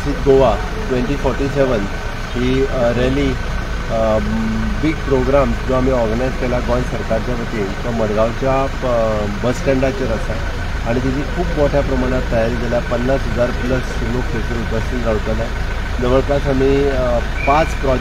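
A man talking continuously over the steady low hum of an idling car.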